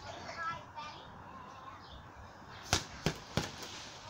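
Three quick punches landing on a hanging heavy bag: sharp thuds about a third of a second apart, starting about two and a half seconds in.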